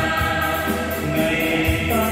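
A man and a woman singing a duet into handheld microphones over instrumental accompaniment with a steady beat, amplified through a PA system.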